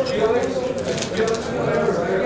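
Voices of several people talking in a large room, with a few sharp clicks scattered through.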